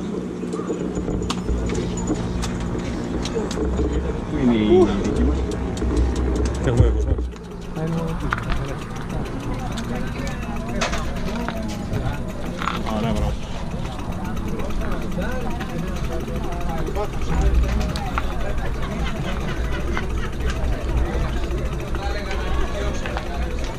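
Indistinct talking of several people close by, over a low rumble on the microphone. A steady low hum runs under the first seven seconds or so and then cuts off suddenly.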